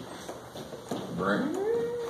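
A person's voice making a drawn-out, wordless sound. From about a second in it rises steadily in pitch and then holds the high note.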